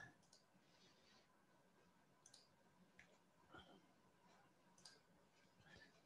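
Near silence broken by a handful of faint, sharp computer mouse clicks spread over a few seconds, as a screen share is being started.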